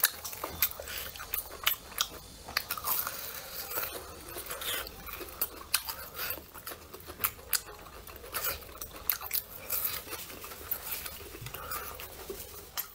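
Close-up biting and chewing of deep-fried brown-sugar glutinous rice cakes (hongtang ciba) with a crisp fried crust: an irregular stream of short, sharp crunchy clicks.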